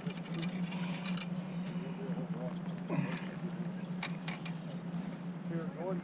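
A steady low hum with faint, indistinct voices over it, and a few sharp clicks, the clearest two about four seconds in.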